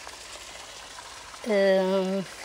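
A woman's voice holding one drawn-out vowel, like a hesitation sound, starting about one and a half seconds in, over a faint steady background hiss.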